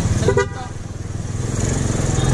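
A short horn beep, then a motorcycle engine running as the bike pulls away, growing louder.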